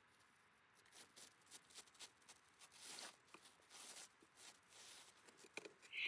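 Faint, scattered rustling of a thin three-ply paper napkin as a ply is peeled away by hand, starting about a second in.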